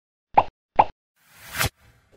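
Cartoon sound effects for an animated logo intro: two short pops about half a second apart, then a whoosh that swells and cuts off sharply.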